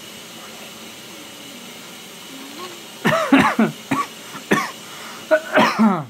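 A man laughing in a run of short bursts, starting about halfway in, over a steady low room hiss.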